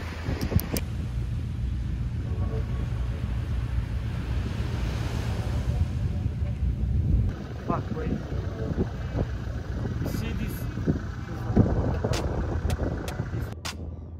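Vehicle engine running with a low, steady rumble, a few sharp clicks near the end.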